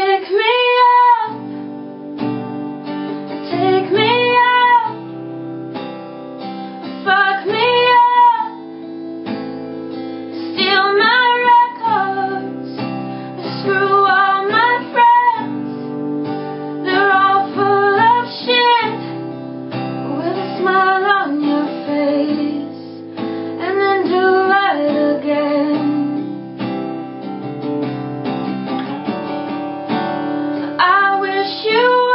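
A woman sings in phrases every few seconds, with a steel-string acoustic guitar played along underneath.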